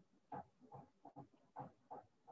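A rapid string of faint, short vocal sounds, about six in two seconds.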